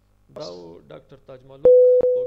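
WeChat video call hanging up: near the end, a click and then a loud, steady single-pitch beep, the call-ended tone.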